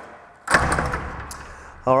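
Glass squash-court door opened and swung through: a sudden clunk about half a second in, followed by a low, noisy rattle that fades away over about a second.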